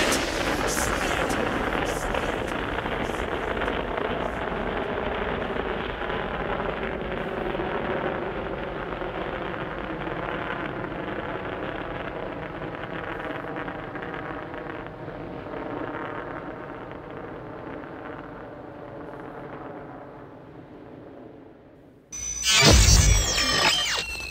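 Muffled outro of a nu metal song: sustained, layered tones with the treble cut off, fading slowly over about twenty seconds. About two seconds before the end, a sudden loud burst of electronic sound with sliding pitches cuts in.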